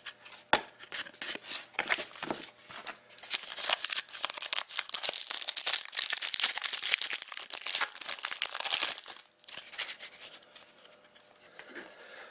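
Foil wrapper of a Panini Certified hockey card pack being torn open and crinkled. Scattered ticks and rustles for about three seconds, then several seconds of dense crinkling that dies down near the end.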